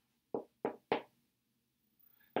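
Dry-erase marker writing on a whiteboard: three short strokes about a third of a second apart within the first second.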